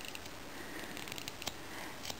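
Carving knife paring wood on a small hand-held carving: faint scraping with a scatter of small ticks, and one sharper click about one and a half seconds in.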